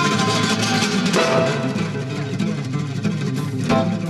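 Live acoustic guitar played fast with a pick, a rapid run of notes over a band with drums.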